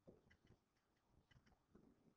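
Near silence in a room, with faint ticking: two quick ticks about once a second.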